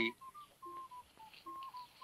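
Faint, thin, high-pitched tune of short steady notes, each held a fraction of a second and stepping slightly up and down around one pitch.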